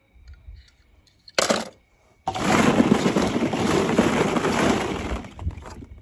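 One sharp clack, then a few seconds of die-cast metal toy cars clattering and rattling against one another in a plastic tub.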